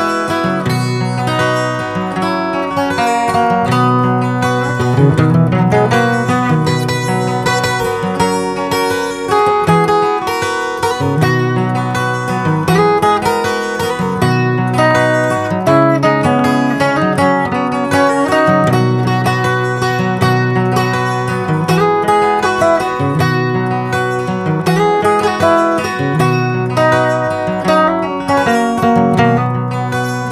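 Acoustic guitar with a capo, played as a solo instrumental: a continuous run of plucked melody notes over repeating bass notes.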